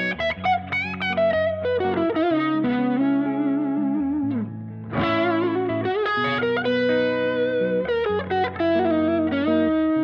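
Two Epiphone ES Les Paul Pro semi-hollow electric guitars played together through amps: held lead notes with vibrato ring over sustained lower notes, with a short dip in level about halfway through.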